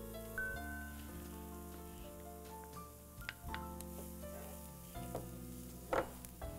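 Chopped garlic sizzling gently in hot olive oil in a wide frying pan as it is stirred with a wooden spoon, with a few light knocks of the spoon on the pan.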